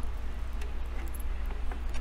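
A few faint, light clicks of a small metal connector housing and cable being handled, over a steady low hum.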